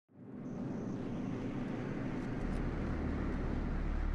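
A car approaching on the road: a steady rushing noise that fades in at the start and swells slowly, with a deep low drone coming in about halfway through.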